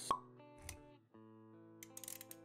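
Intro music with sustained notes and a short, sharp pop sound effect just after the start, followed by a brief low thud and a few clicks near the end.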